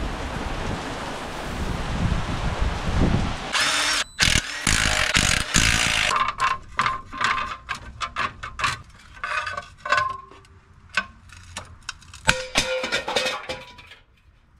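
Steady rain for the first few seconds. Then a power tool runs in short bursts, followed by a run of sharp metallic clicks and clanks as the bolts come off an old flywheel on a VW engine.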